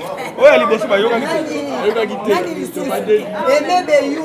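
Speech: a woman talking continuously.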